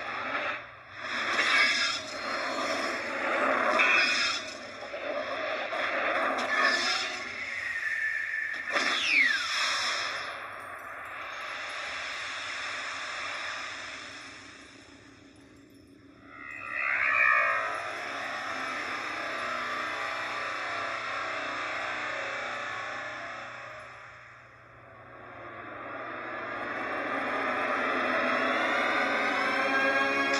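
DTS cinema sound-format trailer played over theatre speakers: sweeping whooshes and swelling synthetic tones, with a sharp falling swoop about nine seconds in. The sound dips near the middle, bursts back, and builds in a rising swell toward the end.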